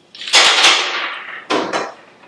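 Clams tipped into a pan of boiling broth: a sudden loud splash and sizzle that hisses away over about a second, followed by a short clatter as the pan's lid goes back on.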